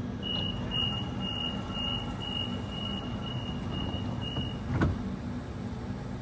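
Door-closing warning beeps of a Sydney Trains Waratah double-deck electric train: a rapid series of high beeps, about two a second for some four seconds, then a thump as the doors shut, over the train's steady low hum.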